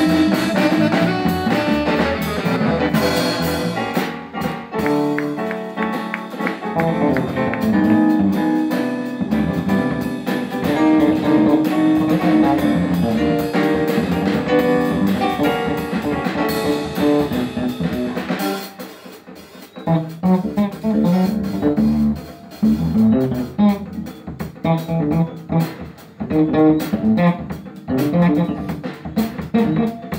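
A live jazz combo playing, with electric bass guitar to the fore over drum kit and keyboard and no saxophone. About two-thirds of the way in the music drops briefly, then comes back in short, clipped notes.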